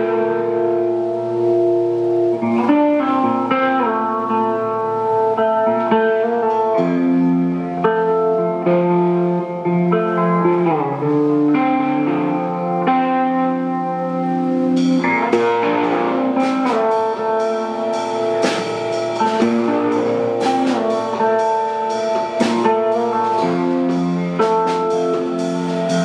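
Electric guitar played live through an amplifier, holding ringing chords that change every few seconds. About halfway through, sharp drum-kit and cymbal hits join in and the sound gets busier.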